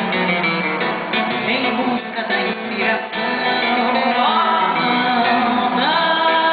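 A woman sings a samba song with acoustic guitar accompaniment, holding a long steady note in the second half.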